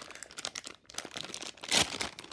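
Shiny plastic blind bag crinkling and crackling irregularly as hands twist and pull at it to get it open, with one louder crackle near the end.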